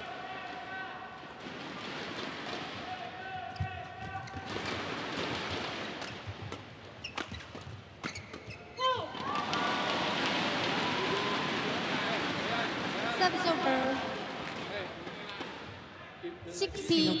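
Badminton arena crowd: a steady din of spectator voices, then a rally with sharp racket strikes on the shuttlecock from about eight seconds in, under louder crowd calls and shouts.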